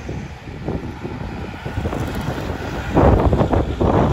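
Outdoor street noise: wind buffeting the phone's microphone over a low rumble of traffic, rougher and louder about three seconds in.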